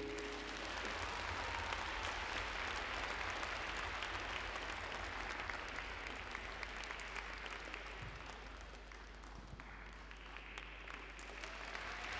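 Audience applause: many hands clapping together, slowly dying down over several seconds.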